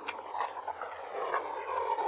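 A tiger gnawing and crunching on meat on the bone, with scattered sharp clicks over a steady background hum that swells slightly in the second half.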